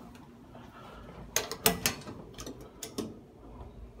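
Metal electrical breaker panel door being opened by hand: a quick run of sharp clicks and knocks from its latch and hinge, the loudest a little over a second in, then a few lighter clicks.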